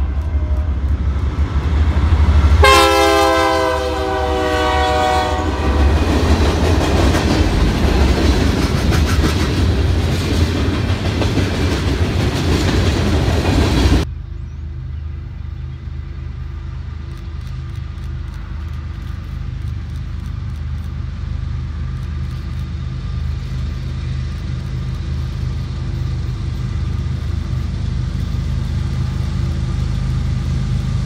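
A diesel freight locomotive's multi-note horn sounds one long blast about three seconds in, its pitch sagging slightly as it passes, followed by the loud rumble of the locomotives and rail cars going by. About halfway through the sound cuts to a quieter, steady low drone of a distant freight train's diesel locomotives, growing slightly louder as it approaches.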